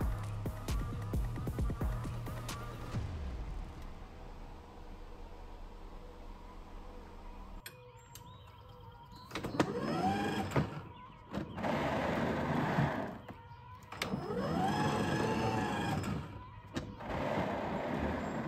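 Electric self-propel drive motor of a Toro 60V Max 21" Stripe battery mower whirring up and down in pitch three times as the drive is engaged and released, over background music.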